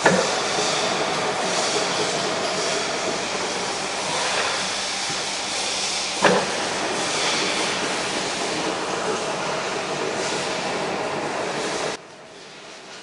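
Metal lathe running steadily with a steel disc spinning in its chuck, a continuous mechanical noise. There is a sharp knock at the start and another about six seconds in, and the noise cuts off abruptly at the end.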